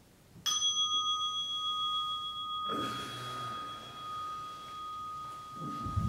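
A meditation bell struck once, ringing on in a long, slowly fading tone with several clear overtones. This marks the end of a 30-minute sitting. Robe cloth rustles partway through and there is a soft bump near the end as the sitter bows to the floor.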